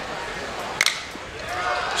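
A single sharp crack of a metal bat hitting a pitched baseball about a second in, over steady ballpark crowd noise.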